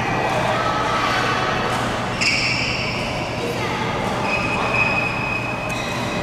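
Large indoor sports hall ambience: voices echoing around the hall, with sports shoes squeaking on the court floor about two seconds in and again later, and a sharp tap near the end.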